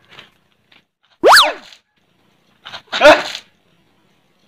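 Cartoon 'boing' sound effect: one quick, loud pitch glide that shoots up and falls straight back, about a second in. A second short, loud burst with a thump follows about three seconds in.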